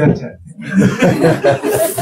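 A man chuckling. The laughter starts about half a second in, right after a spoken word, and runs on for over a second.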